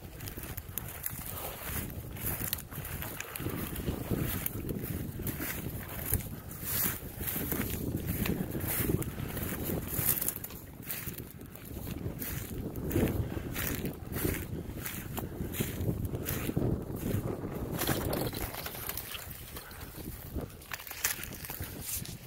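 Footsteps and rustling through dry grass and brush, a run of irregular crackles as the stalks and twigs are pushed through, over wind rumbling on the microphone.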